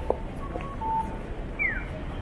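City street sound: a steady murmur with footsteps and knocks. Two short electronic beeps come about half a second and a second in, and a quick falling chirp comes near the end.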